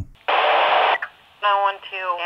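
Two-way radio transmission: a burst of static lasting under a second, then a dispatcher-style voice through the radio's narrow, tinny speaker starting near the end.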